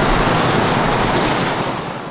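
Steady rushing noise of a military helicopter in flight over the sea, mixed with wind and surf.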